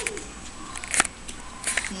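Handling noise from a small handheld camera: scattered light clicks and rustles, with one sharp click about a second in.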